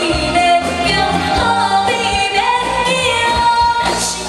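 A woman singing a Mandarin pop song into a microphone over a live band with keyboards, amplified through a stage PA.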